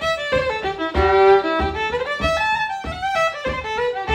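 Solo fiddle playing an Irish traditional tune: a run of short bowed notes, with one longer held note about a second in.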